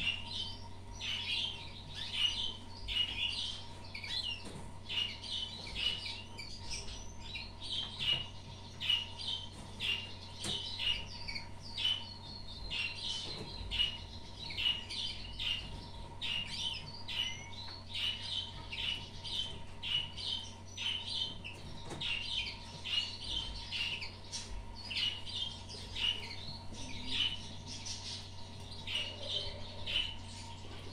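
Small songbirds chirping, short high calls repeating about two or three times a second without a break, over a faint steady low hum.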